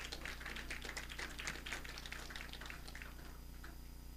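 Rustling and a rapid run of light clicks and taps from items handled on a lectern, busiest over the first three seconds and thinning out near the end.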